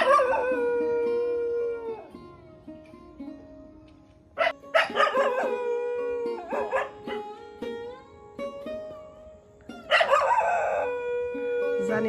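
A dog giving three long drawn-out calls, each about two seconds, barking for ages, over faint background music.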